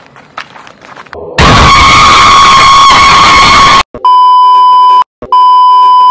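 Faint rustling, then a loud burst of TV static hiss lasting about two and a half seconds, followed by two long steady test-tone beeps, each about a second long with a short gap between them: a TV-glitch editing effect.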